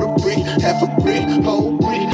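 Hip hop background music with rapping over a heavy bass beat.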